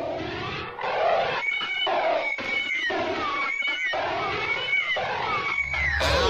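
Single-engine propeller plane running as it taxis past, its sound wavering and growing louder about a second in. A thin high whine slides down in pitch several times.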